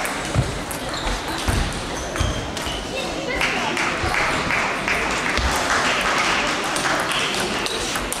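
Table tennis balls clicking off bats and tables in a run of short, sharp ticks, over the steady chatter of a crowd in a sports hall.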